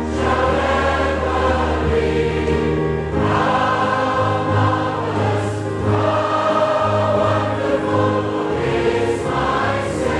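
Choir singing a slow hymn: sustained chords that change every second or two over a held low bass.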